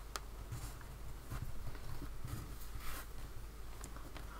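Faint rustling and light taps of a fabric strip being folded and creased by hand on a cutting mat, with a few small clicks.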